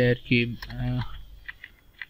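A few separate keystrokes on a computer keyboard as spaces are typed into a line of code, with a man's voice talking briefly over the first of them.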